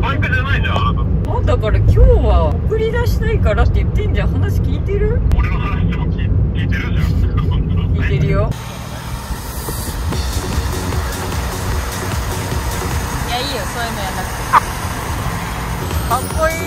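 Voices over a steady low vehicle rumble, which breaks off suddenly about halfway through into a quieter, even hiss, with a single sharp click near the end.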